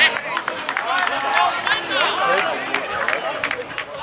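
Players and spectators shouting and calling out during an amateur football match, many short yells with no clear words, over a few sharp knocks, the loudest right at the start.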